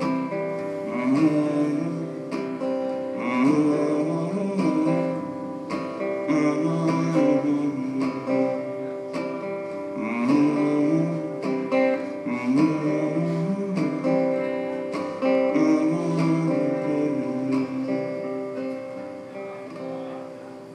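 Acoustic guitar played live, strummed with a short melodic figure repeating every couple of seconds as the song's instrumental ending, growing quieter near the end.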